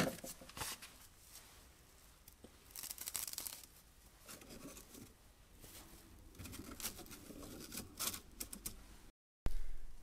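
A stack of paper sanding discs being handled and set into 3D-printed plastic storage cubes: faint rustling and scraping with light taps, loudest about three seconds in and again near the end. The sound drops out completely for a moment shortly before the end.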